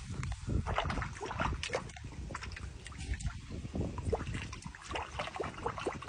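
Black jaguar lapping and splashing the water of a metal stock tank and nudging a floating ball, a run of irregular short splashes and licks.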